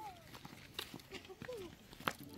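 Faint footsteps, a few soft steps about every half second, with distant voices in the background.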